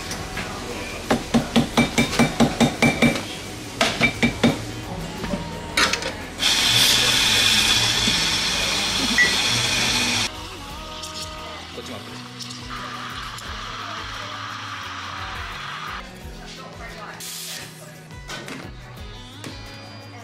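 Espresso being made at a café espresso machine. First comes a quick run of about a dozen knocks, then a loud steady whirring noise for about four seconds, then a quieter steady hiss for a few seconds more, with background music throughout.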